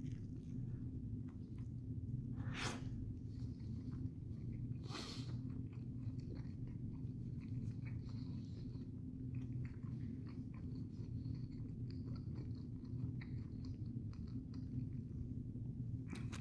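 A person biting into and chewing a mouthful of cheeseburger on a soft bun, quiet mouth sounds over a steady low hum. Two brief louder noises come about two and a half and five seconds in.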